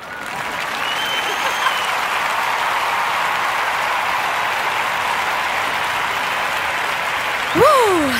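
A small audience applauding steadily at the end of a song. Near the end someone lets out a short cry that rises and falls.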